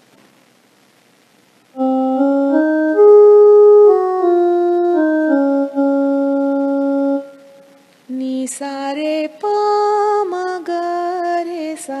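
An electronic keyboard plays a short Raga Yaman phrase in sustained, steady notes from about two seconds in, rising and then stepping back down. From about eight seconds in, a woman sings the same phrase in sargam syllables over the keyboard.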